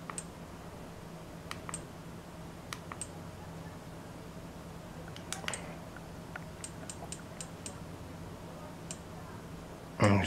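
Small plastic button clicks from a compact action camera as its settings menu is stepped through, scattered single clicks and a quick run of about six near the middle, over a low steady hum.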